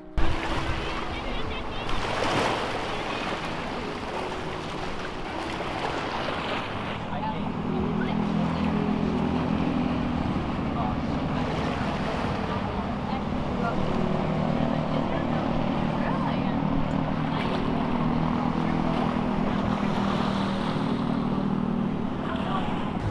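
Boat motor running under a steady wash of wind on the microphone and moving water, its low hum coming up about seven seconds in and holding steady.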